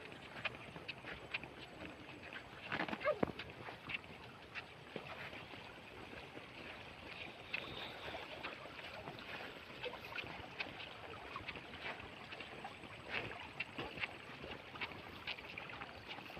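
Shallow water running in a small concrete irrigation channel, a steady rush, with scattered light clicks and taps through it. A brief voice sound comes about three seconds in.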